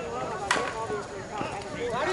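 Slowpitch softball bat hitting the ball: a single sharp hit about half a second in, with players' voices around it.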